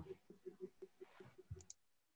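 Near silence with faint, irregular clicking, several clicks a second, stopping after about a second and a half when the sound cuts out.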